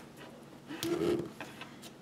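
Soft paper and sticker handling, light clicks and rustles as a glitter header sticker strip is placed and pressed onto a planner page, with a short hum-like sound about a second in.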